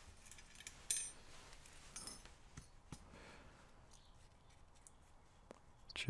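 Faint, scattered clicks and small metallic clinks of a brass lock cylinder and a thin shim being handled as the cylinder is shimmed for disassembly, the sharpest click about a second in.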